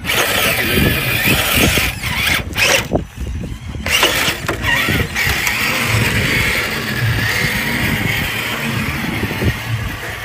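Electric drive motor and geartrain of a 1/10-scale RC rock crawler whining as it drives over dirt and rocks, the pitch wavering with the throttle and easing off briefly about three seconds in, over rough rumbling handling noise.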